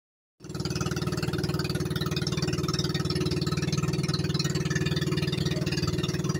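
Small engine of a motorized outrigger boat (bangka) running steadily under way, with water rushing along the hull.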